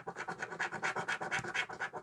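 A pound coin scraping the coating off a scratch card, in quick, even back-and-forth strokes.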